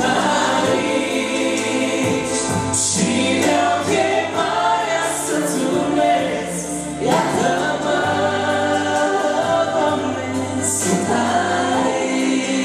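Live Christian song in Romanian: a woman and a man singing into microphones over steady instrumental backing.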